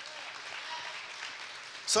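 Congregation applauding steadily. A man's voice comes in at the very end.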